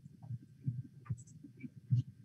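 Faint, irregular low thumps with a few small clicks.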